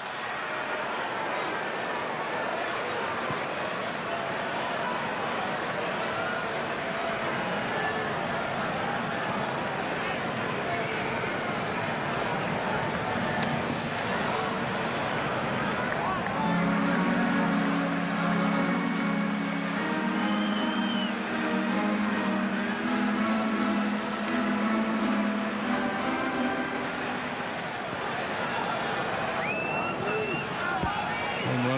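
Steady murmur of a ballpark crowd. From about halfway, a stadium organ plays sustained chords over it for roughly ten seconds.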